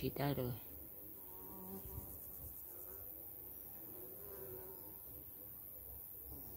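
Flying insects buzzing around flowers, a faint hum that slowly rises and falls in pitch as they move about.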